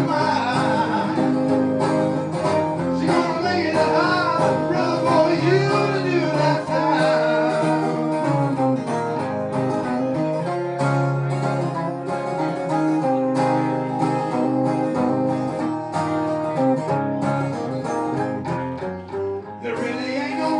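Live acoustic guitar strummed steadily, with a man singing over it through a microphone and PA; the voice is strongest in the first half, and the guitar carries more of the second half.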